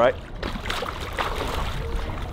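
Pool water splashing and churning as punches are driven through it at the surface, in uneven surges.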